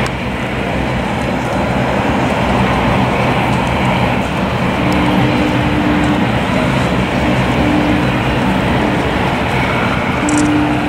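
An engine running steadily under a loud, even rushing noise, with a faint higher tone that comes and goes from about halfway in and again near the end.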